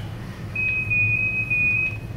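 A single steady, high-pitched electronic beep, about a second and a half long, starting about half a second in. It comes over the playback of Apollo astronaut footage from the lunar surface.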